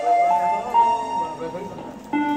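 Electronic keyboard playing a slow melody of long held notes, stepping up twice in the first second, then holding one note that fades.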